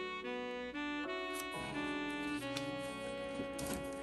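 Instrumental background music: a melody of held notes that change every half second or so over a soft accompaniment.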